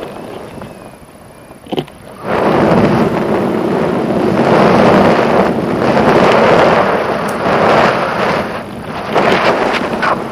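Wind rushing over an action camera's microphone as a tandem paraglider gets airborne. After a brief knock, the loud rush starts suddenly about two seconds in and stays steady as the glider flies.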